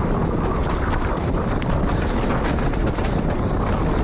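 Wind rushing over the microphone of a camera on a mountain bike descending a dirt trail at speed, with steady tyre noise on the dirt and frequent sharp clicks and rattles from the bike.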